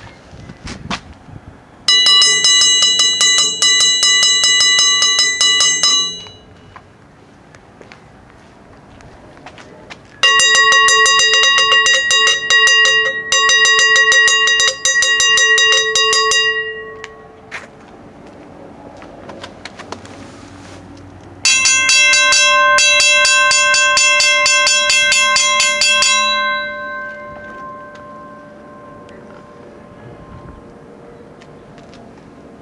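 Three railroad crossing signal bells, a Western-Cullen-Hayes mechanical bell and mini-bells, rung one after another, each a fast, even run of strikes lasting about four to six seconds. Each bell has its own pitch, and the last one rings on faintly for a few seconds after its striking stops.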